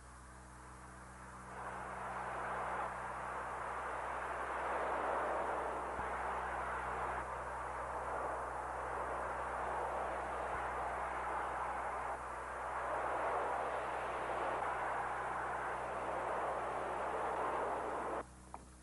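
A motorboat running at speed across open water: a steady rush of engine and spray that swells about a second and a half in and stops abruptly at the end.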